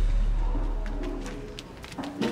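A deep rumble dying away over about a second and a half, the shaking of an earthquake subsiding. Faint soft calls and a few light clicks come in as it fades.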